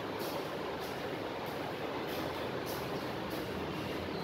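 Steady background noise with a faint hiss and soft, evenly repeating high ticks.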